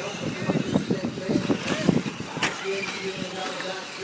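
Radio-controlled race cars running around a dirt track, their motors rising and falling in pitch, with indistinct voices in the background.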